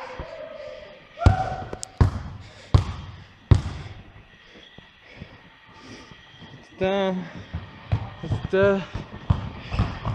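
A Spalding basketball dribbled on a wooden gym floor: four sharp bounces about three-quarters of a second apart in the first few seconds.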